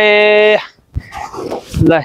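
A voice singing a long held note that stops about half a second in. It is followed by a soft thud and faint scraping, fitting a hoe blade striking and dragging through dry soil.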